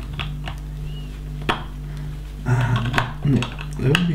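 Plastic LEGO bricks clicking and clattering as loose pieces are picked through and pressed together: a few sharp clicks, the loudest about a second and a half in.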